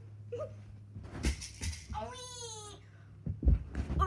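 A high, wailing voice whose pitch slides downward, with one long call about two seconds in and short calls around it. Sharp knocks and thumps come before and after it.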